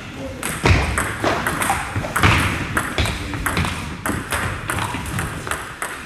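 Table tennis rally: the ball clicks sharply off the bats and the table in a quick, irregular run of hits, echoing in a gym hall.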